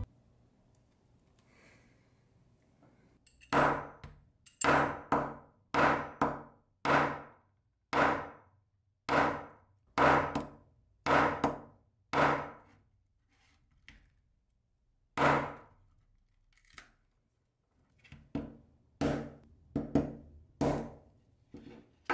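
A steel adjustable wrench is struck repeatedly onto the Gorilla Glass Victus+ back of a Galaxy S22 Ultra. Each blow gives a sharp knock with a brief metallic ring, at about one a second for some ten blows. Then comes a pause, a single blow, and a quicker run of blows near the end.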